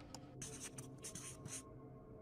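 Handwriting sound effect: a run of quick, scratchy pen strokes, starting about half a second in and stopping just past a second and a half, over faint background music.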